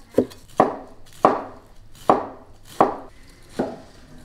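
Cleaver chopping radish greens on a wooden table: about six chops in four seconds at an uneven pace, each a sharp knock of the blade through the leaves onto the wood.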